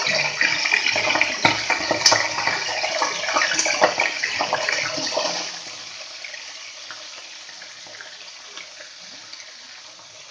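Raw chicken pieces sizzling and crackling in hot oil in a kadai. The sizzle is loud with sharp pops for about the first five and a half seconds, then settles to a quieter, steady sizzle.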